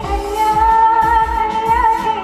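Woman singing live into a microphone through a PA, holding a long, slightly wavering note over keyboard and band accompaniment with a steady low beat, in a romantic song mashup.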